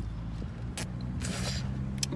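Steady low hum of a car's engine and cabin, with a short click a little under a second in and a brief airy hiss around the middle.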